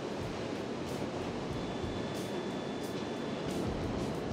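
Steady rushing background noise of a large underground tunnel, with a faint thin high whine in the middle.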